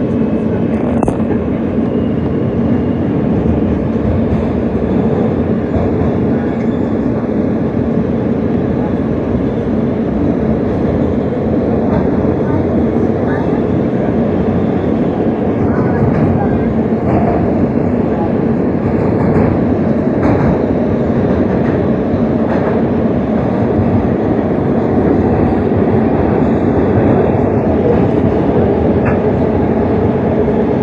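New York City Subway E train running through the tunnel, heard from inside the car as a loud, steady rumble of wheels on rail.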